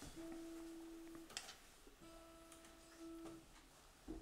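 Two faint, steady held notes at the same pitch, each a little over a second long with about a second's pause between, as the trio readies the next piece.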